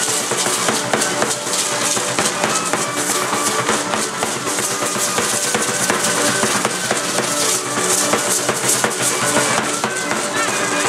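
Live dance music: a drum beating with the dancers' hand rattles shaking steadily, over a sustained melody line.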